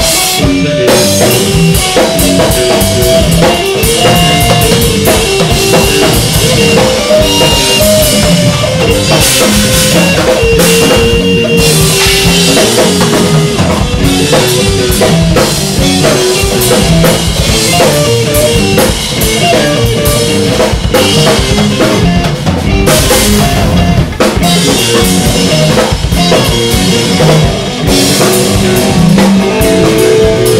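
Loud rock music on drum kit and guitar, with steady drumming under a stepping melodic line.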